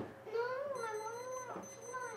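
A young child's voice calling back from off to the side, faint and unintelligible, saying no to an invitation.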